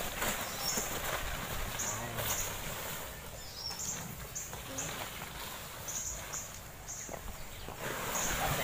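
A woven plastic tarp rustling as it is pulled back off a pile of dry coconuts. Short high chirps repeat irregularly in the background.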